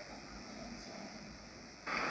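Faint, even background hiss in a pause between speech; a louder sound starts just before the end.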